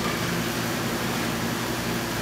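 Steady, even hiss of background noise with no other sound standing out.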